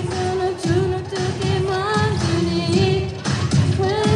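A girl singing a pop song into a microphone over backing music with a beat, sung through a hall PA.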